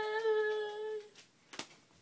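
A girl's voice holding a final sung or hummed note steadily, fading out about a second in. A brief knock follows near the end.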